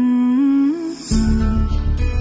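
Background music: a hummed tune climbing in short steps, joined about a second in by guitar with a bass line.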